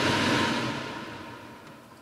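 Kitchen cooker-hood extractor fan running: a rush of air with a faint steady whine, fading away steadily over the two seconds.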